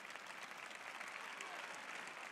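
Faint applause from a large audience in an arena: many hands clapping at once.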